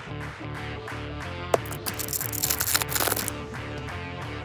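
Background music with a regular beat, over which a stack of trading cards is handled: a short click about a third of the way in, then about a second and a half of papery rustling and sliding as cards are flipped from front to back of the stack.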